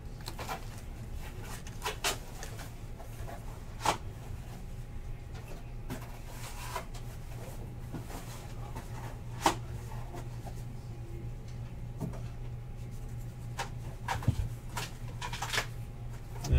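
2017 Topps Heritage baseball cards being thumbed through and flicked from one hand to the other, giving soft sliding rustles and occasional sharp snaps of card edges, the loudest about four and nine and a half seconds in, over a steady low hum.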